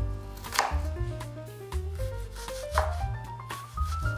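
Chef's knife chopping an onion on a wooden cutting board, a few sharp knocks of the blade on the wood. Under it runs background music with a pulsing bass beat and a rising melody.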